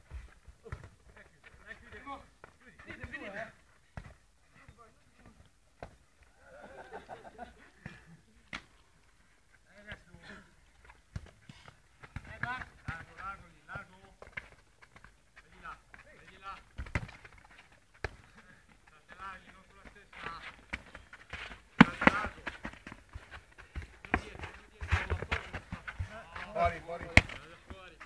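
Indistinct voices of players calling out across a football pitch, with several sharp thuds of a football being kicked; the loudest kick comes about three-quarters of the way through.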